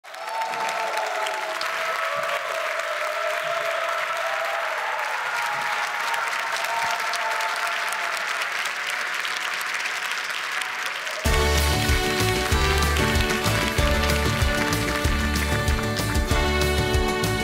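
Studio audience applauding, with a few held tones underneath. About eleven seconds in, a live band starts suddenly and loudly into the song's introduction, with heavy bass and a steady beat.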